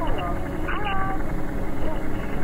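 Figeater beetle's wingbeats slowed down with the slow-motion footage, turned into a low, fluttering drone like a helicopter rotor. A few drawn-out gliding tones sound over it near the start and about a second in.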